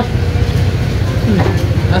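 Steady low mechanical hum of a running engine, under faint voices.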